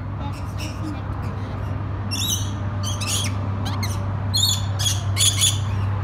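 Rainbow lorikeets screeching: several short, high calls scattered through, most of them in the second half, over a steady low hum.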